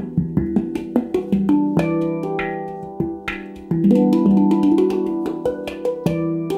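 Zaora E Magic Voyage 9-note stainless-steel handpan played by hand: fingertip strikes on the tone fields in a quick rhythm, each note ringing on and overlapping the next. The playing grows louder a little past halfway.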